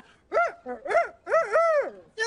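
A high puppet voice imitating a rooster's crow, the wake-up call: two short rising-and-falling calls, then a longer drawn-out one.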